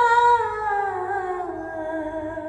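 A woman singing unaccompanied into a microphone, holding one long vowel that glides slowly down in pitch from about a second in and fades gradually.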